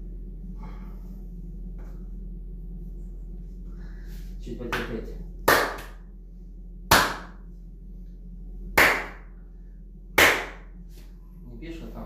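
Four sharp open-hand slaps on a bare back, about one and a half to two seconds apart, over a low steady hum.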